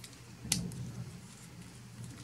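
A sharp plastic click about half a second in as the parts of a small Transformers Generations Tailgate toy are shifted by hand during its transformation, with faint handling noise over a low steady hum.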